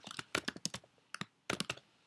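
Typing on a computer keyboard: quick keystrokes in short runs with brief pauses between them.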